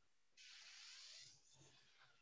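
Near silence, with only a very faint hiss for about a second.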